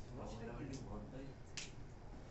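Faint, low speech with a single sharp click about a second and a half in.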